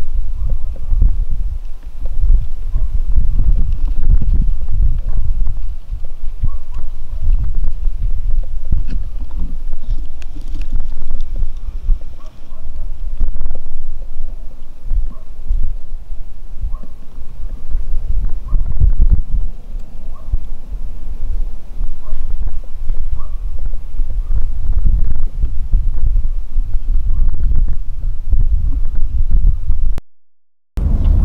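Wind buffeting the camera microphone: a loud, uneven low rumble that rises and falls throughout.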